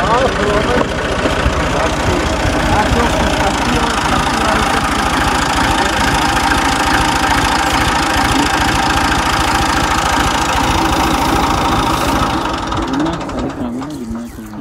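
Diesel farm tractor engine running steadily as the tractor drives along a dirt track close by, its even firing beat fading out near the end.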